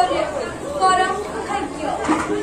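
A performer's voice declaiming lines, with crowd chatter behind it.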